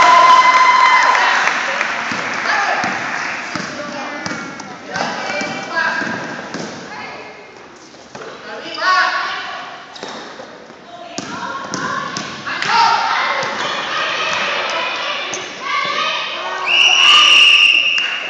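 Indoor basketball game in a gym: a basketball being dribbled on the hardwood floor, with spectators and players shouting, loudest at the start. A referee's whistle blows for about a second near the end.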